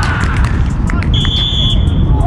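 Referee's whistle blown once about a second in: a single steady blast of about half a second that fades away, stopping play for offside. A steady low rumble runs underneath.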